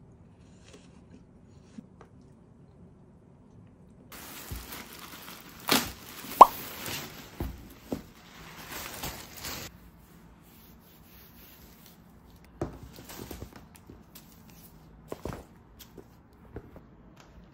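Rustling of a canvas shopping bag being handled, lasting a few seconds in the middle, with sharp clicks and a short plop. A few light taps and knocks follow near the end.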